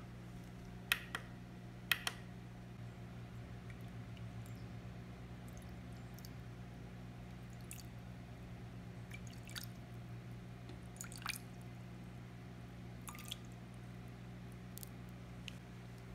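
Distilled water poured from a bottle into a glass jar on a kitchen scale: faint trickling and drips, with a couple of sharp little clicks about one and two seconds in and scattered softer ticks after. A steady low hum runs underneath.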